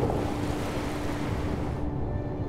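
Ocean surf: waves breaking, a steady rushing noise of water.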